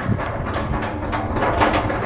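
Rustling and scattered knocks of a hand-held camera being swung around, mixed with room noise.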